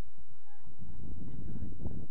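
Wind buffeting the microphone: a low rumble that grows stronger under a second in, with a few faint, short, high calls in the background early on.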